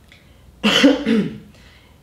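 A man coughing to clear his throat: two short, loud coughs in quick succession about half a second in.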